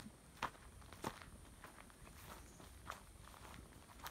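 Faint footsteps of someone walking slowly over grassy ground, a step roughly every half second to second.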